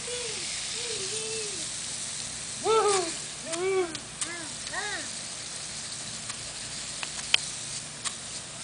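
Lawn sprinkler head spraying with a steady hiss, while a baby babbles in short rising-and-falling calls, a few at the start and a louder run between about three and five seconds in.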